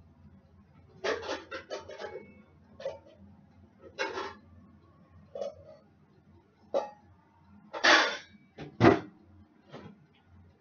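Kitchen clatter: irregular knocks and short scrapes, the two loudest near the end, over the low steady hum of an air fryer running.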